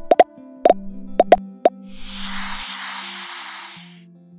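Cartoon sound effects: a quick run of about half a dozen short pops, each flicking upward in pitch, then a hissing whoosh lasting about two seconds, over soft background music.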